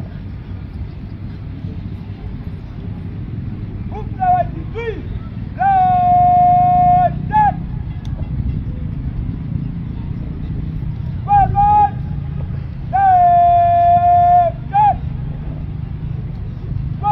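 Drill words of command shouted in drawn-out calls to a marching squad: two short calls, one long held call and a short sharp one, then the same pattern again about seven seconds later. A steady low rumble runs underneath.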